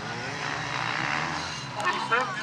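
A distant engine, growing louder to about a second in and then fading, with voices starting near the end.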